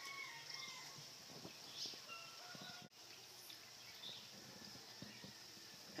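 Near silence: faint outdoor ambience with a few faint, short bird chirps.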